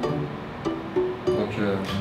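Background music: a plucked string instrument, guitar-like, playing a short run of single notes.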